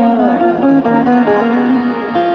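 Live qawwali music: an instrumental melodic passage of held, stepping notes, led by harmonium.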